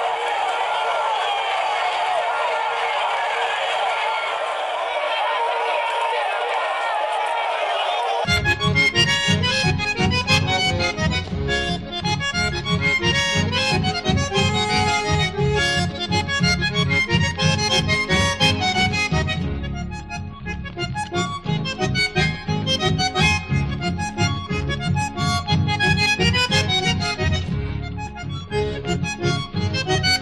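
Background music laid over the race footage. For the first eight seconds it is a thin mid-range sound with no bass. Then a fuller track cuts in suddenly, with a steady rhythmic bass beat and quick, bright melodic notes.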